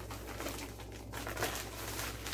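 Tissue paper rustling and crinkling as a wrapped gift is unwrapped by hand, in irregular, crackly handling noise.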